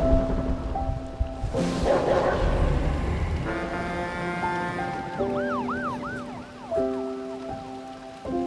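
Soft music of held chords over steady rain, with a low rumble about two seconds in. Around the middle, a short warbling tone rises and falls several times in quick succession.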